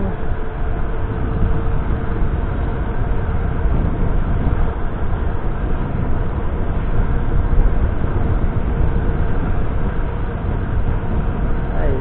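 Steady wind rush on the microphone with road rumble from a Mibo electric scooter riding along a town street, strongest in the low end and without breaks.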